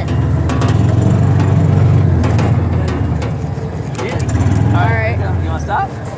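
John Deere utility vehicle's engine running as it drives over bumpy ground, with a steady low rumble and scattered knocks and rattles from the body.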